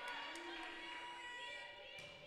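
Faint murmur of voices in a gymnasium: players and spectators talking quietly in the hall during a volleyball match.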